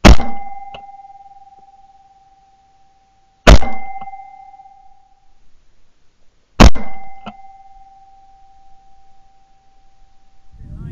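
Three shotgun shots at woodpigeons in flight, at the start, about three and a half seconds in, and just under seven seconds in. Each shot is followed by a steady ringing tone that fades over a second or two and by a faint click.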